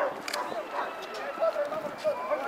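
Shouting voices of players and spectators at an outdoor football match, none clearly understood, with a single sharp knock about one and a half seconds in.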